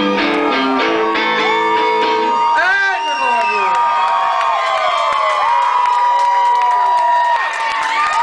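An electric guitar plays the last strummed chords of a blues song, which ring out after about two and a half seconds. Then come whoops and cheering from a club audience, with a long held high note.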